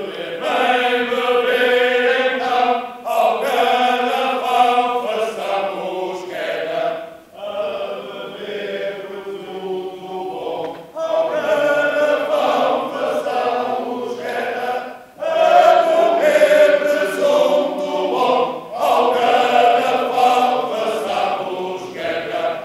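Male chorus singing a Portuguese drinking song about wine, in phrases broken by short pauses every few seconds.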